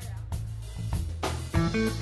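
Live instrumental band playing a groove: drum kit and electric bass, with electric guitar notes coming in about one and a half seconds in.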